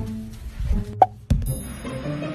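Background music with a short cartoon-style plop sound effect about a second in, then a sharp knock, and a bright chiming tone starting near the end.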